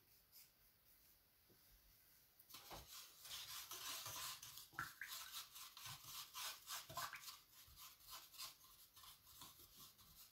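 Faint, quick rubbing or brushing strokes that start about two and a half seconds in and die away a few seconds later.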